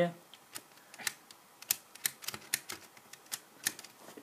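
Sharp, irregular clicks from the Dell Latitude D620 laptop's small wireless on/off switch being flicked back and forth by hand, roughly a dozen in a row.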